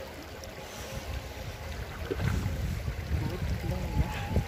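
Shallow stream water flowing over rocks, with wind rumbling on the microphone, louder from about halfway through.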